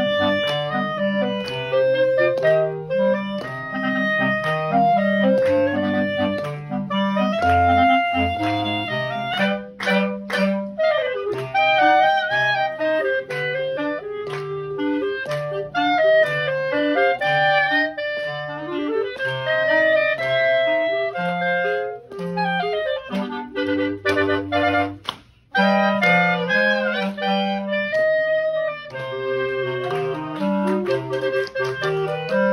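Clarinets playing live in an ensemble: a melody over a lower accompanying line, in sustained and moving notes, with a brief pause about three-quarters of the way through.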